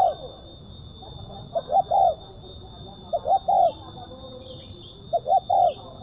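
Spotted dove cooing: three phrases of two short coos and a longer final coo, repeated about every second and a half to two seconds.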